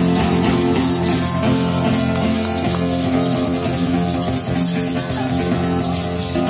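Acoustic guitar playing a steady chord accompaniment, with children's tambourines and shakers jingling along.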